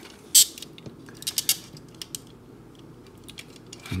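Plastic parts of a Planet X PX-09S Senectus transforming robot figure clicking as they are handled and tabbed into place: one sharp click about half a second in, then a quick run of smaller clicks a second later and a few fainter ticks.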